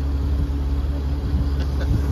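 An engine idling steadily with a low, even drone.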